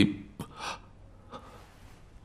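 A spoken word ends, then a faint, short breath from a person about half a second in, with a small click just before it; the rest is low room tone.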